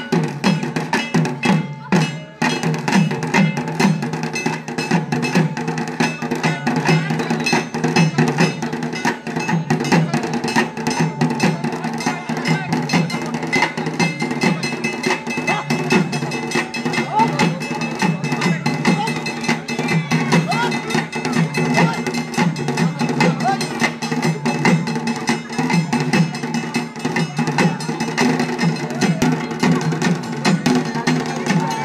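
Folk drums and clanking metal percussion playing a fast, steady beat for a lathi khela stick-fighting display, with a crowd's voices mixed in.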